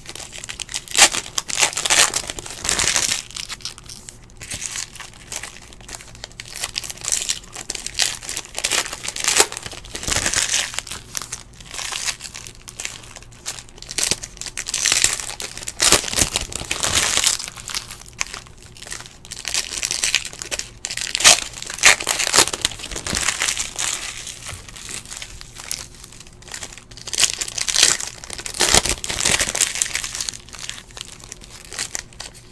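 Panini NBA Hoops trading-card pack wrappers being torn open and crinkled by hand, in irregular bursts of rustling crinkle one after another.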